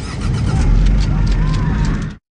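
Loud film soundtrack of a heavy vehicle's engine rumbling, with a run of irregular sharp cracks and knocks over it.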